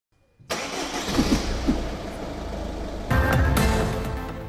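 A car engine starting and revving over music, cutting in suddenly about half a second in after a brief silence.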